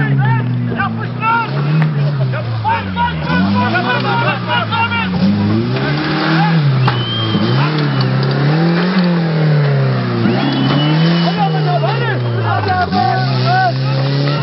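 Stock 1998 Suzuki Vitara 1.6 EFI's four-cylinder engine driven hard off-road, revving up and easing off again and again, its pitch rising and falling every second or two. Spectators' voices are heard over it.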